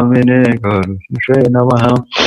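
A man's voice chanting Sanskrit prayers in a steady reciting tone, two phrases with a short break about a second in.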